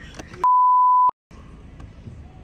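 A censor bleep: one steady 1 kHz beep lasting about two-thirds of a second, edited over the soundtrack, which drops out entirely while it sounds and for a moment after.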